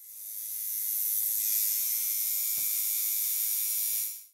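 A steady, high-pitched hiss like static that fades in over the first second, holds, and dies away at the very end.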